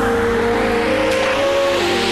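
Electronic music: a synth melody sliding smoothly between notes over a rising noise sweep, with the bass dropping out about the start.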